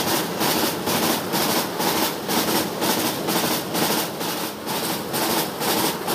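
Container freight train rolling past close by on a bridge: a steady rumble of the wagons with a regular clatter of wheels over the rail joints, about three beats a second.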